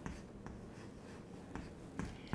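Chalk writing on a chalkboard: a few faint taps and scratches as the strokes are made.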